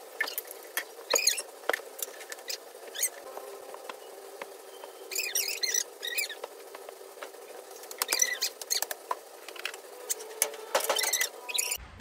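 Rustling of cloth and soft thumps and taps as pillows, cushions and quilts are handled and stacked while a bed is made, in short irregular bursts.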